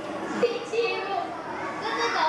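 Children's voices chattering indistinctly, with the echo of a large room.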